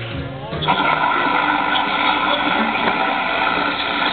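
Recorded music ends on a held low note about half a second in. Then a steady wash of audience applause and cheering rises and carries on.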